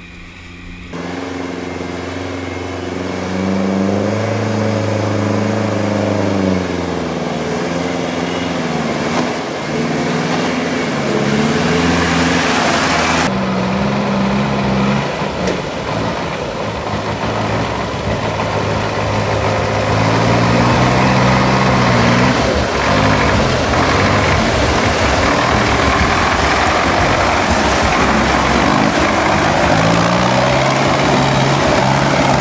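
Off-road vehicle engines revving up and down under load while driving through deep mud and water, over a steady hiss of churning water. From about halfway it is the GAZ-66 truck's engine, its pitch rising and falling as the throttle is worked. The sound changes abruptly about a second in and again near halfway.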